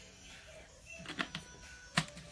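A few short clicks and knocks from a plastic water bottle being handled around a drink, the sharpest one near the end, over faint background music.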